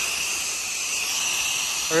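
Pressure-washer wand spraying a wide, low-pressure fan of downstream soap mix onto vinyl house siding: a steady hiss of water jet and spray.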